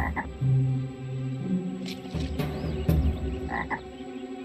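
Cartoon frog croaking in a series of low, steady-pitched croaks, each about half a second long.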